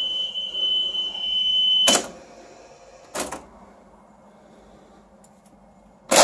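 Steady 3 kHz test tone from a PAL Betamax alignment tape playing on a Sanyo VTC9300P Betacord, cut off about two seconds in by a loud mechanical clunk from the deck's controls. A second, lighter clunk follows about a second later.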